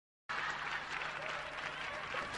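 Audience applause starting about a quarter second in, after a brief silence, and holding steady.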